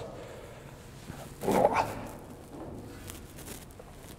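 Light scuffs and knocks of a man's shoes and hands on a ladder as he climbs down through a deck hatch, with one short, louder pitched sound about a second and a half in.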